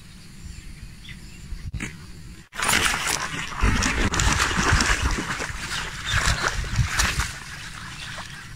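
A snakehead thrashing and splashing at the surface among floating water chestnut leaves, hooked on a frog lure: a loud run of irregular splashes starting suddenly about two and a half seconds in and easing off near the end. Before it, quiet outdoor ambience.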